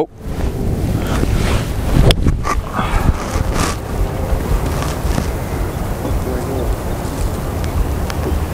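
Wind buffeting the microphone throughout, with a single sharp crack of a golf club striking the ball about two seconds in.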